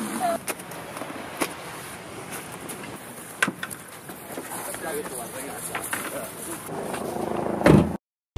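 A few sharp knocks and clatter as gear is handled in the open back of a Jeep, over steady outdoor background noise with low voices. A loud thump comes just before the end.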